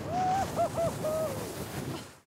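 A person's high whooping call, rising, dipping twice and falling away over about a second and a half, over a steady hiss of wind noise.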